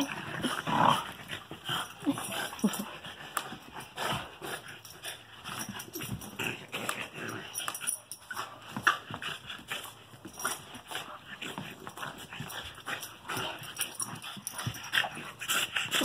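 Two dogs play-fighting: scuffling and tussling with many short knocks and clicks, and brief dog vocal sounds scattered through.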